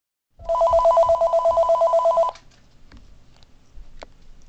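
Telephone ringing with an electronic trill, two tones alternating rapidly, for about two seconds, then cutting off abruptly as the call is answered.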